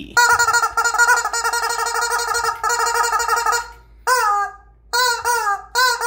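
Squeezed rubber chicken toy shrilling: one long, warbling squeal of about three and a half seconds, then several short squawks, each rising and falling in pitch.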